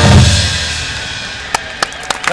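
Marching band's final chord: brass with bass drum and timpani hits, cutting off in the first half second and ringing out over about a second. A couple of sharp claps come near the end, the start of the applause.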